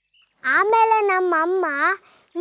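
A boy's high voice calling out in one long drawn-out line with a wavering, sing-song pitch, starting about half a second in.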